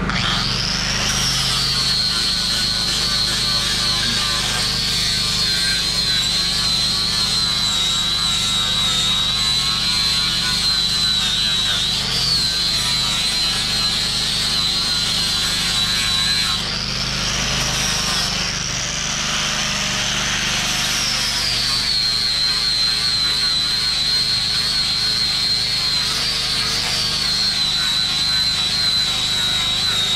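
Angle grinder with a 36-grit flap disc running and grinding down an old oak board: a steady high whine from the motor over the scrape of the abrasive. Past the middle the whine rises in pitch for a few seconds as the load on the disc eases, then settles back down as it bites into the wood again.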